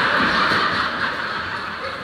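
Audience laughter filling a hall, loudest in the first second and tapering off.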